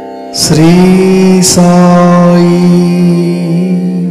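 A voice chanting a devotional Sai mantra over a steady drone accompaniment. The voice enters about half a second in with a short upward slide and holds one long note, with a brief break about a second later.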